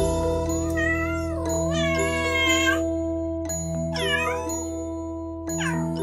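A cat meowing four times, each meow rising and falling in pitch, over a steady held chord of backing music.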